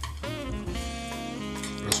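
Background jazz music.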